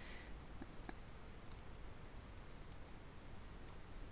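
Faint, scattered computer clicks, several over a few seconds, as program blocks are clicked and dragged on screen, over a low steady hiss.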